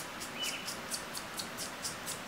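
A razor comb scraped repeatedly along the end of a synthetic wig curl, a faint, quick, rhythmic scratching of about five or six strokes a second as the blade slowly cuts through the strand.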